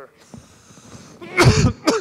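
A man coughing into his hand: a loud cough about a second and a half in, followed by a shorter one.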